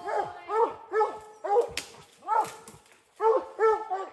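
Redbone coonhound barking treed, the bark that signals a raccoon is up the tree: a steady run of short chop barks, about two a second, with a brief pause a little past the middle.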